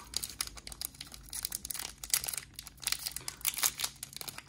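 Foil wrapper of a Magic: The Gathering Kaldheim Collector Booster pack crinkling in the hands: a dense, irregular crackle as the sealed pack is handled.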